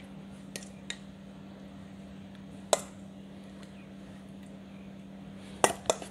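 A metal spoon clinking against a stainless steel bowl as tzatziki is spooned out into small bowls. There are a few sharp clinks: two light ones about half a second in, a louder one near the middle, and a quick louder pair near the end.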